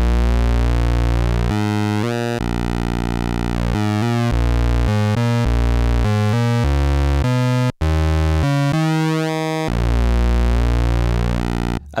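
Arturia MicroBrute monophonic analog synthesizer playing a run of low single notes on a square wave while its pulse width is turned, so the tone keeps thinning and thickening. There is a very short break a little before eight seconds in.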